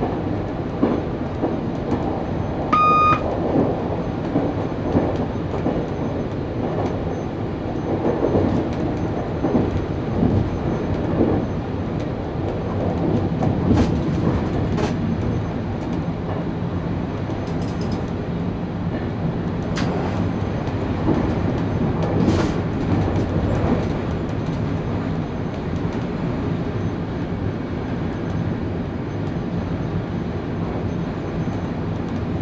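Running noise of a moving train heard from inside the driver's cab: a steady rumble of wheels on rail with irregular clatter over joints and points, and a few sharp clunks in the second half. A short electronic beep sounds about three seconds in.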